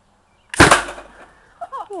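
Homemade potato gun firing: one sharp, very loud bang about half a second in, with a short fading tail, as the potato strikes the toy target. A voice exclaims near the end.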